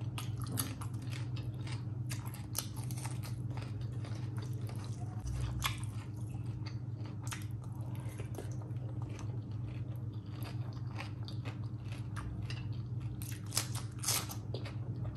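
A person chewing and eating rice and curry by hand, with irregular wet chewing clicks and smacks and a denser burst near the end, over a low steady hum.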